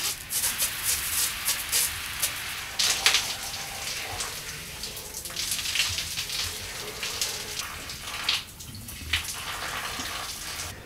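Shower running: water spraying from an overhead rain shower head and splashing onto a person and the tiled stall, a steady hiss with uneven splashes.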